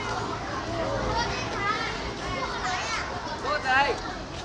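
Many young children chattering and calling out at once, their high voices overlapping, with one child's louder high-pitched call near the end.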